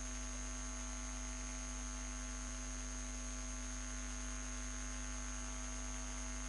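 Steady electrical mains hum with an even hiss and a thin high whine, unchanging in level.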